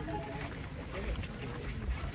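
Wind buffeting the microphone as a low, uneven rumble, with faint voices of men talking in the background.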